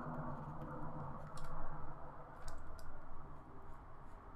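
A few faint, light clicks of computer keys, heard over a steady low room hum.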